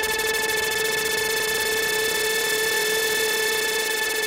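Psytrance breakdown: a held synthesizer drone with a stack of overtones, its pitch wavering slightly past the middle, with the drum beat dropped out.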